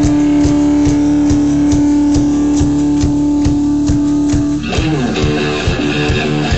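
Live rock band playing: electric guitars hold one sustained note over a quick, steady drumbeat, then slide down into a new chord about four and a half seconds in.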